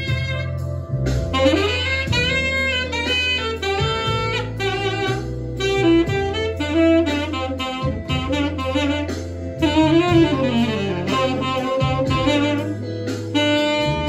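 Tenor saxophone with a metal mouthpiece playing a jazzy melodic line, with bent notes, short breaths between phrases and a falling run about ten seconds in, over a backing track with a held bass line.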